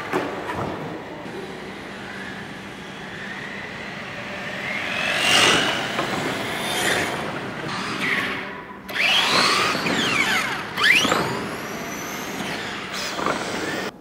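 Remote-control model cars running on carpet, their motors whining up and down in pitch as they accelerate and slow, with the loudest sweeps about five seconds in and again near the three-quarter mark.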